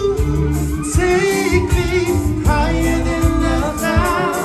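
Live band playing a song: sung vocals over electric guitar, keyboard, bass guitar and drums, continuous and loud.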